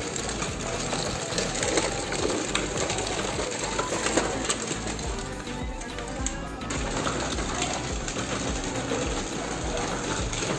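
Hard plastic wheels of a child's ride-on tricycle rattling and clattering over brick pavers, a dense run of small clicks that eases briefly a little past halfway.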